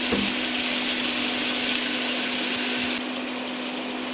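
Chicken pieces sizzling in hot oil in a stainless steel pot as they brown: a steady hiss, with a steady low hum underneath. The sizzle turns a little quieter about three seconds in.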